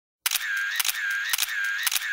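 Camera shutter clicks, each followed by a short whirring motor-drive wind, repeated in an even rhythm about twice a second after a brief silence at the start.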